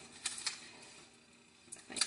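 Faint handling of a sheet of origami paper being folded and creased on a tabletop, with a few light ticks and taps near the start and again near the end and a very quiet stretch between.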